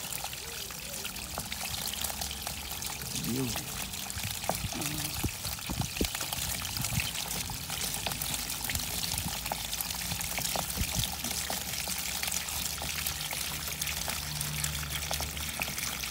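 Water poured gently from a jerrycan into a plastic basket, splashing and draining through the mesh as it carries catfish fingerlings out with it; a steady pouring and trickling sound.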